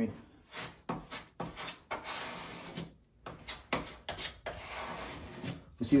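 Putty knife scraping wood filler into nail holes and across a plywood shelf. There are several short strokes, then two longer scrapes of about a second each.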